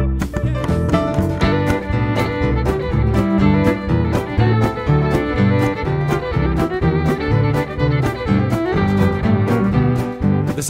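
Western swing band playing an instrumental break: fiddle over upright bass, guitar and drums on a steady swing beat. The fiddle's lines come in about a second and a half in.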